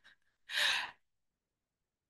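A single audible breath drawn by a speaker, lasting about half a second and coming about half a second in, in a pause between words.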